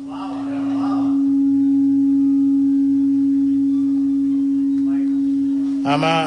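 A loud, steady drone on one held pitch, like a singing bowl or sustained synth note in a background music bed, swelling over the first second and then holding.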